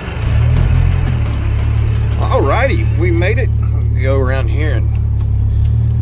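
GO-4 three-wheeler's engine running with a steady low drone, heard from the driver's seat, with a man's voice saying a few words over it about midway.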